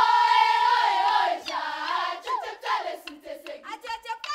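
Girls' choir singing a Marakwet folk song: the full choir comes in loudly at once, holds a high note for about a second, then sings on more softly.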